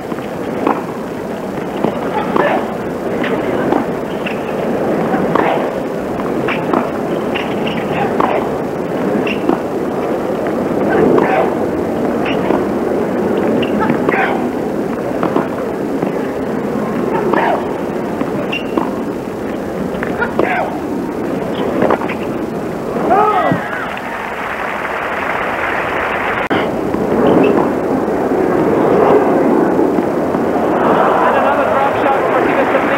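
Tennis stadium crowd noise with scattered sharp hits, racket on ball, during a rally, swelling near the end. It is heard through a worn videotape recording with the high end cut off.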